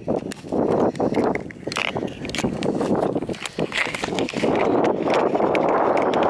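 Handling noise: the camera's microphone rubbing against a knitted scarf and jacket fabric, with scrapes and knocks as it is moved about, while the hiker climbs over a fence.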